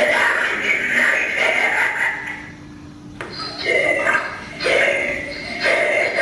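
Animated Halloween prop's recorded voice speaking one of its spooky sayings, with a short pause about halfway through.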